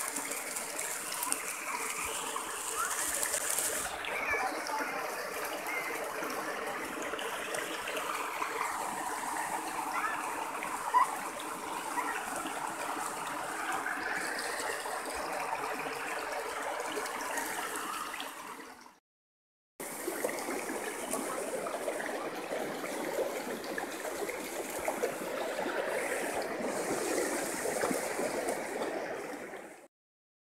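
Shallow river water running and gurgling steadily over rocks and stones. It cuts off abruptly for about a second roughly two-thirds of the way through, then resumes.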